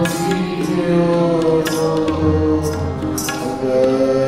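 Sikh kirtan: a harmonium playing sustained melody notes with a sung line over it, while tabla drums beat out a steady rhythm of sharp strokes.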